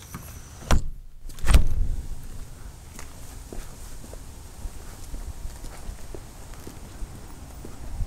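Footsteps on an asphalt driveway, faint against a steady outdoor background, after two loud knocks close together about a second in.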